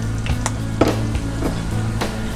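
Chopped chilies sizzling and frying in hot oil in a frying pan, under background music, with a couple of short clicks around the middle.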